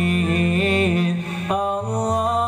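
Men singing sholawat, Islamic devotional praise of the Prophet Muhammad, through handheld microphones: long held notes with a wavering melody, a new phrase starting about one and a half seconds in.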